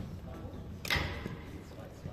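Sports-hall background of indistinct voices, with one sharp click or knock about a second in that rings briefly.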